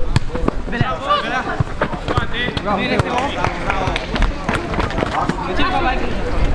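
Football players shouting and calling to each other during play, cut by repeated sharp thuds of the ball being kicked.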